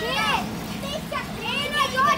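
Several children shouting and chattering over one another in high, excited voices, with a steady low hum underneath.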